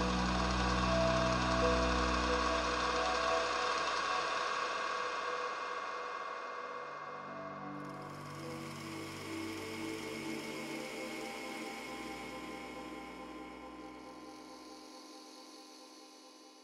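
Ambient synthesizer music: layered sustained pad chords with a deep bass underneath, changing chord about halfway through. The whole track slowly fades out, the bass dropping away near the end.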